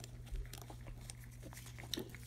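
Faint, scattered light clinks of a steel secondary timing chain being handled and wrapped around a camshaft phaser sprocket, over a low steady hum.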